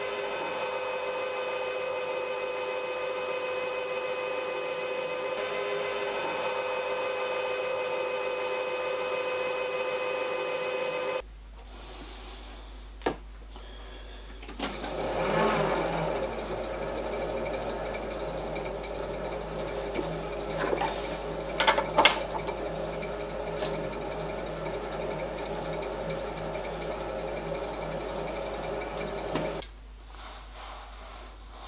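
Milling machine spindle running with a steady motor whine while a small spot drill cuts a metal part. After a cut about eleven seconds in, the machine runs again as a 3/16-inch reamer goes through the hole, with a brief scraping of the cut and a few sharp clicks.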